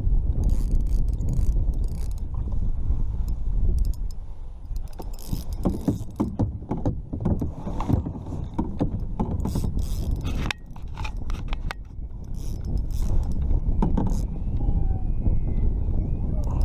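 Wind buffeting the camera microphone in a loud, steady rumble, with irregular clicks, rattles and knocks from a fishing reel being cranked and the rod handled against the kayak while a large striped bass is on the line.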